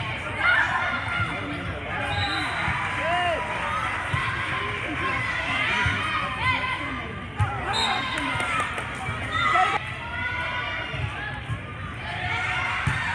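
Volleyball rally on a hardwood gym court: sneakers squeaking, ball hits and footfalls thudding, and players and spectators calling out, all in a large gym hall.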